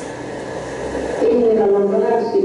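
Speech from a projected archival film's soundtrack: a short pause with a low hum, then a man's voice talking from about a second in.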